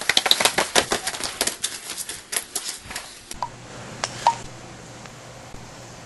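A quick, irregular run of sharp clicks and taps that stops about three seconds in. After that comes a quieter stretch with a low steady hum and a couple of single clicks.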